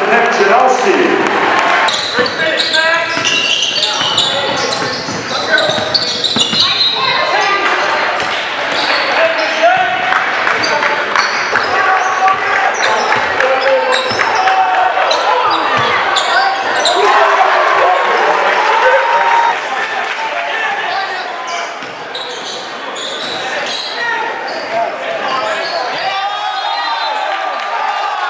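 Live game sound in a school gymnasium: a basketball dribbling on the hardwood court amid crowd chatter and shouts, echoing in the large hall. The crowd noise drops suddenly about twenty seconds in.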